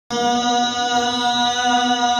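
A man's voice holding one long, steady chanted note through microphones, the opening of a Pashto noha recitation.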